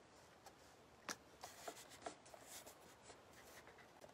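Near silence, with faint rubbing and a few soft ticks as hands slide and press a strip of decoupage paper into place on a painted board.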